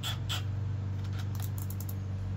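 Keyless chuck of a Milwaukee M12 Fuel hammer drill being hand-tightened on a quarter-inch drill bit: a couple of clicks at the start, then a quick run of clicks near the end. A steady low hum sits under it throughout.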